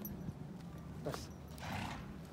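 A horse blows out once through its nostrils, a short breathy burst near the end.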